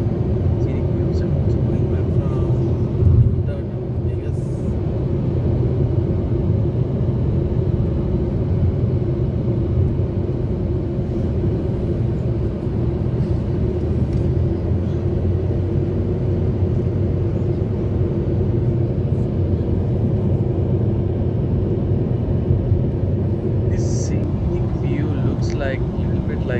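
Steady road and engine rumble inside a car's cabin at highway speed, with a brief louder thump about three seconds in.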